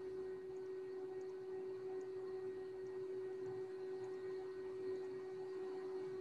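Faint room tone with a single steady, even hum running underneath; no speech.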